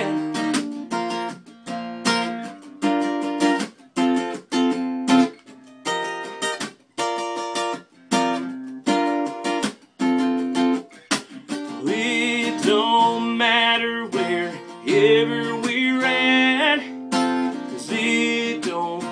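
Acoustic guitar strummed in a steady rhythm of chords, an instrumental break in a country song; about twelve seconds in, a voice comes in over the guitar.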